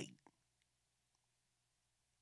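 Near silence: room tone with a faint steady low hum, and one small click just after the start.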